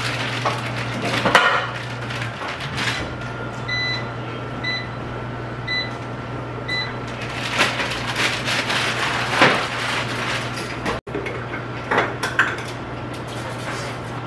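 A kitchen appliance gives four short electronic beeps, about a second apart. Under them runs a steady low hum, and household items knock and clatter as they are handled on the counter.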